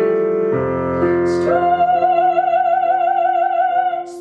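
Solo female voice singing in classical, operatic style with piano accompaniment. From about a second and a half in, she holds one long note with vibrato over the piano.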